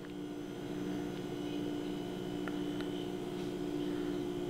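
A steady low hum in the room, with a few faint ticks about a second and two and a half seconds in.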